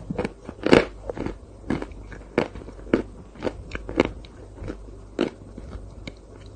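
Close-miked chewing of a mouthful of chocolate ice cream dessert, with crisp, irregular crunches about one or two a second.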